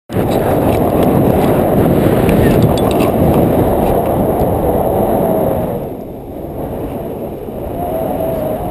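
Wind rushing over the camera microphone of a tandem paraglider in flight, loud and buffeting, easing a little near the end.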